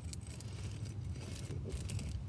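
A drinking glass rolled by hand over sandpaper freshly glued onto fabric, a faint gritty rolling scrape, over a low steady rumble.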